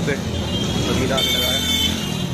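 Busy street sound: voices talking and motor traffic. A steady high-pitched tone gets louder about a second in and fades near the end.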